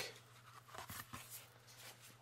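Faint handling of an old hardcover picture book as its cover is opened: a few soft paper-and-cardboard taps and rustles over a low steady hum.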